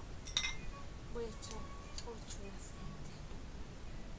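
A single light glass clink about half a second in, ringing briefly, as a glass jar is handled, followed by a few faint small ticks.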